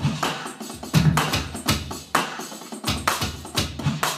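Electronic drum kit played with wooden sticks, its drum sounds coming through a speaker in a rhythmic beat of repeated hits with low thumps.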